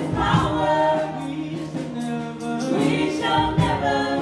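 A women's worship team singing a gospel song together into microphones, over keyboard accompaniment.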